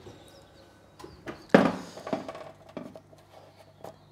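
Metal baking tray set down on a wood-and-steel trivet: a few light knocks, then one sharp clattering knock about a second and a half in, over a faint steady hum.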